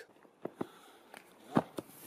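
A few soft thumps of feet on sand, the loudest about one and a half seconds in.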